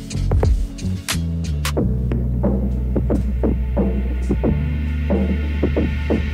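Background music: a deep, held bass line under plucked notes that fade after each hit, in a steady rhythm, with a few sharp percussive clicks near the start.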